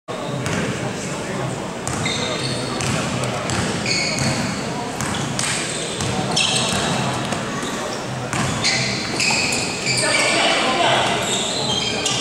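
Basketball game in a gymnasium: the ball bouncing on the court and many short, high-pitched sneaker squeaks, over the talk and calls of players and spectators, echoing in the large hall.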